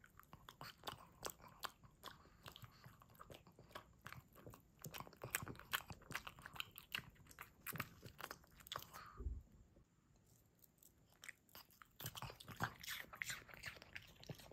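A pug chewing and smacking on hand-fed banana: a run of short, wet mouth clicks and smacks, with a brief lull about ten seconds in before the chewing starts again.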